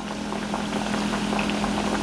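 Plantain slices deep-frying in hot vegetable oil: a steady bubbling crackle, with a steady low hum underneath.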